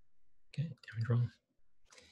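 Computer mouse clicking, with a man's voice saying "okay".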